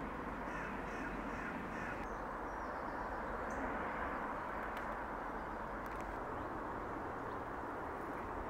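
Steady outdoor background rush with a bird calling about four times in quick succession in the first two seconds.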